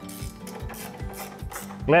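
Hand ratchet wrench clicking in a quick, even run, about five clicks a second, as it turns a bolt on a tow-hitch bracket under a car.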